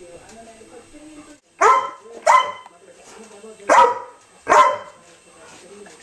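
A dog barking four times, in two pairs of two, each bark short and sharp.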